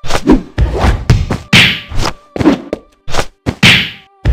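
Fight sound effects of punches and kicks: a quick flurry of about a dozen whacks and thuds in four seconds, some of them with a swish.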